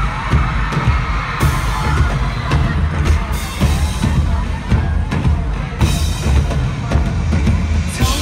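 Live pop band playing an instrumental break: a steady kick-drum and bass beat with guitar and keyboards and no lead vocal. The singing comes back right at the end.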